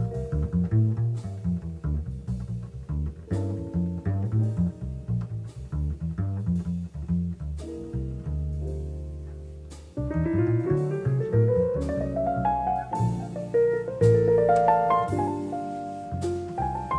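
Jazz piano trio recording: plucked double bass carries the lead for roughly the first ten seconds. Then the piano enters with a rising run and takes over.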